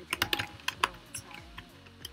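Typing on a computer keyboard: a quick, irregular run of key clicks, thickest in the first second.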